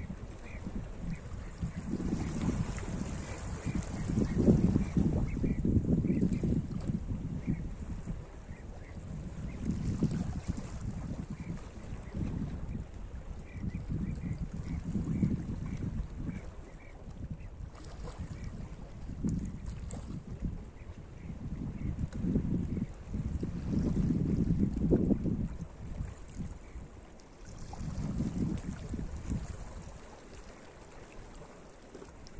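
Small sea waves washing in over shoreline rocks, swelling and ebbing every few seconds, with wind rumbling on the microphone.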